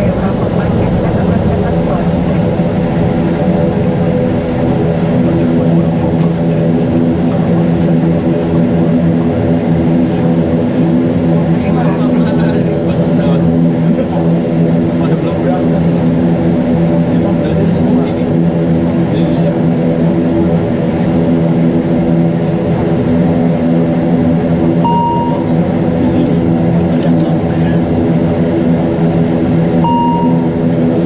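Cockpit sound of an ATR 72-600's twin turboprop engines and propellers during the landing rollout: a loud, steady drone made of several even tones that settle about four seconds in. Two short electronic beeps sound near the end, a few seconds apart.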